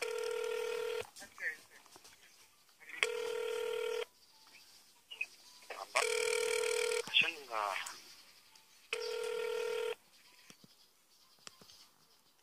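Telephone ringback tone: a steady tone about a second long, sounding four times, one every three seconds, while an outgoing call rings unanswered. A child's voice is heard briefly between the third and fourth tones.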